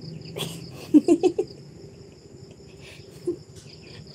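Two women laughing in a few short bursts about a second in, over the steady high chirring of crickets.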